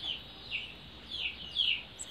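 Bird calls: short, high falling chirps repeated about three times a second.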